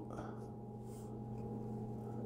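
Faint rustle of thin cardboard trading cards being handled and slid from a stack, twice, over a steady low electrical hum.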